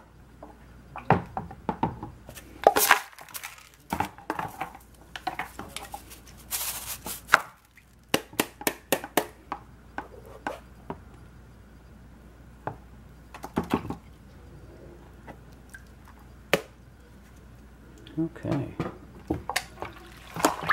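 Irregular sharp taps and clicks of a stainless mesh strainer knocking against a plastic gold pan as the wet gravel in it is tipped out into the pan, with a brief rushing noise about seven seconds in.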